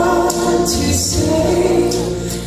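A woman singing a Christian gospel song into a microphone, with long held notes over an accompaniment of choir-like backing voices and a deep bass.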